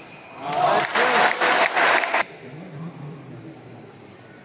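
Spectators clapping and shouting in a burst of about a second and a half after a point is won, cutting off abruptly, followed by low talk.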